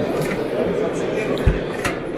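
Background crowd chatter, with a single low thump of a steel boiler lid being shut about one and a half seconds in, followed by a short sharp click.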